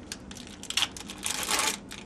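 Syringe's paper-and-plastic wrapper crinkling and rustling as it is peeled open and the syringe pulled free, in two short spells, the second longer and louder near the end.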